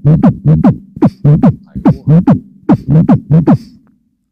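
A beatboxer's mouth-made bass line: a fast rhythm of about four strokes a second, each sweeping down in pitch, over a low humming drone. It stops just before the end.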